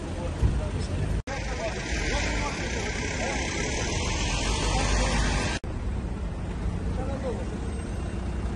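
Outdoor street noise: steady low rumble of traffic with indistinct voices of people nearby, cut off twice for an instant where the footage is edited.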